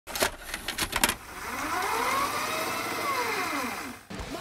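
Edited intro sound effects: a few sharp bursts of static crackle in the first second, then a tone that sweeps up in pitch and back down over about two and a half seconds, fading out near the end.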